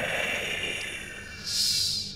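Deep, distorted demonic voice effect trailing off in a long echoing tail, followed near the end by a short breathy hiss, over quiet background music.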